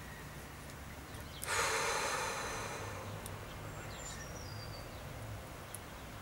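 A person's long exhaled breath: a sudden rush of air about a second and a half in that fades away over about a second and a half.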